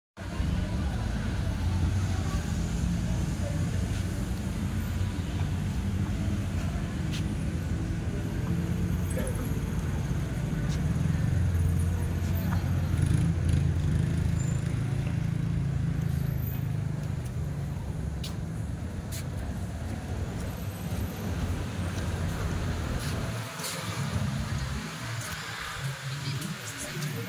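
Harley-Davidson V-twin motorcycle engine idling with a steady low rumble, which drops away a few seconds before the end.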